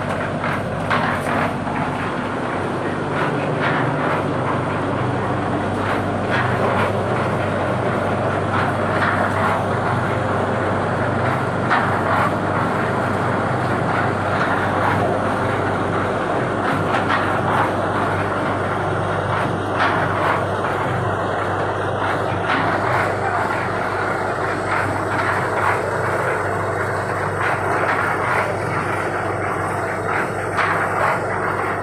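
Steady drone of machinery at a cement paver-block works, with a constant low hum, and frequent knocks and clatter of plastic moulds and concrete blocks being handled.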